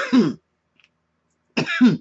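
A person coughing twice, once at the start and again about a second and a half later.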